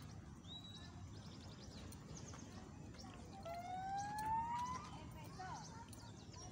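Birds chirping in the background, with short high calls in the first half. About three and a half seconds in comes one long, smoothly rising pitched call lasting over a second, the loudest sound here.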